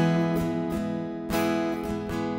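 Acoustic guitar, capo on the neck, strummed in a steady rhythm: a chord rings on between strokes, with several strums about half a second apart.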